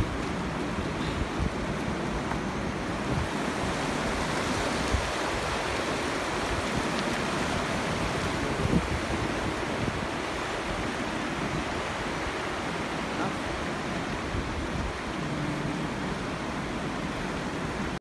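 Steady rushing of a fast mountain river running over stones, swollen with snowmelt.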